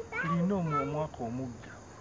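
Only speech: a man talking, falling quiet about a second and a half in.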